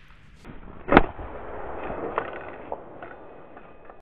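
A single sharp bang about a second in, followed by a lingering noisy tail. It is the Victor rat-trap tripwire alarm snapping and firing its .22 Ramset blank load.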